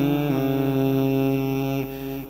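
Pali pirith chanting: the chanting voice holds one long, steady note on the closing syllable of a phrase and fades away near the end.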